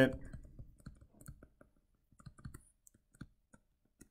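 Stylus tapping and clicking on a tablet screen during handwriting: a scatter of faint, irregular clicks.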